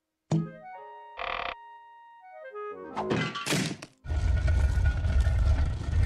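Cartoon music stings and sound effects: a sudden hit with a falling run of notes, a short loud burst, and a rising swoop. Then, from about four seconds in, a loud rumbling crash lasts a couple of seconds as a giant iceberg bursts out of a television set.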